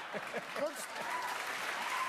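Studio audience applauding, a steady clapping hiss with faint laughing voices over it.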